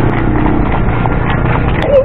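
Footsteps of people walking in flip-flops on a concrete road, a quick run of slaps over a steady low rumble. A short rising-and-falling call is heard near the end.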